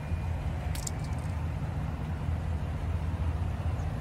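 Steady low vehicle rumble with a light rustle about a second in.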